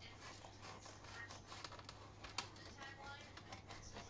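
Faint snips of kitchen scissors cutting through a pizza: a few short sharp clicks, over a low steady hum.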